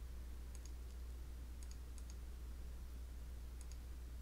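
Faint computer mouse clicks, a few single and some in quick pairs, as points of a polygon are placed, over a steady low electrical hum.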